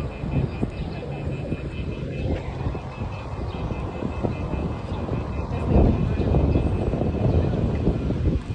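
Low, steady rumble of city street noise from traffic, swelling about six seconds in.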